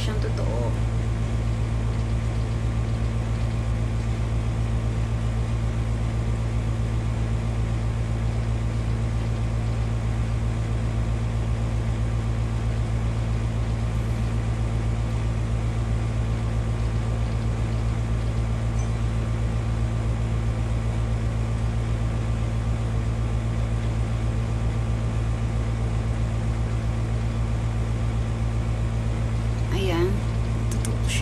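A steady, unchanging low hum with a buzz of evenly spaced overtones over a faint hiss, like electrical or machine noise in the room or the recording.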